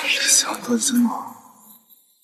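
A man's voice saying a short exclamation, 'damn' (该死), lasting about a second and fading out.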